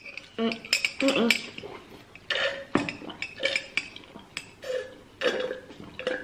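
Close-miked eating of creamy spaghetti: chewing with several short hummed "mmh"s of enjoyment, and light clicks and clinks of forks.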